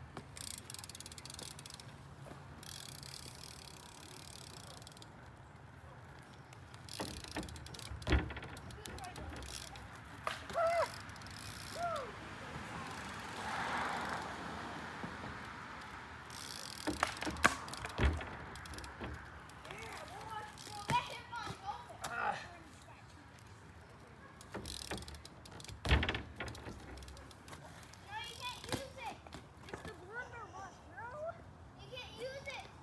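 BMX bike ridden on an asphalt driveway, with tyre noise and several sharp knocks as the wheels come down on the ground and on a plywood kicker ramp, the loudest a little past halfway and near the end.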